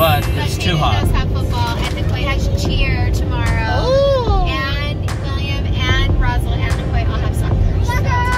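Steady road and engine rumble inside a moving car's cabin, with voices singing or sounding off over it. About four seconds in, one long note rises and falls.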